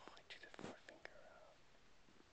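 Faint whispering, with a few soft clicks and a brief rub near the middle.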